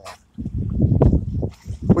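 A black Labrador retriever making a low, rough sound close by for about a second, starting just under half a second in.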